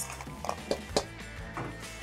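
Soft background music under a few short clicks and scrapes of a silicone spatula against a stainless steel mixing bowl as frozen broccoli florets are tossed.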